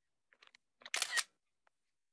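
iPad camera app's shutter sound as a photo is taken: a brief double click about a second in, after a few faint ticks.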